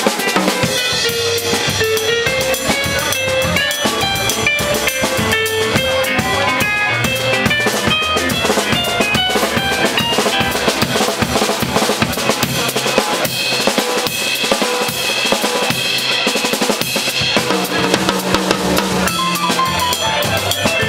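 Live Latin jazz: a drum kit played with sticks, busy snare, bass drum and cymbal strokes, under quick melodic runs on a Kurzweil electric keyboard.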